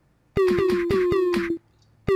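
LMMS Kicker synth kick drum, distorted and tuned up, playing a looped one-bar pattern of about five quick hits with clap samples mixed in. Each pass lasts about a second and is followed by a short gap before the loop starts again.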